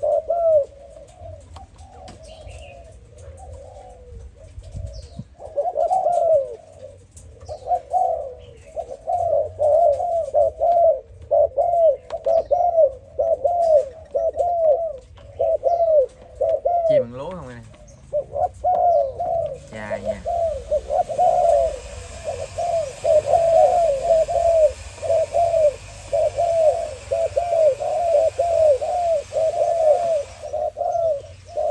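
Spotted doves of the Malaysian strain cooing: a long run of quick, repeated coo phrases, with a short break about three seconds in. A steady hiss joins about twenty seconds in.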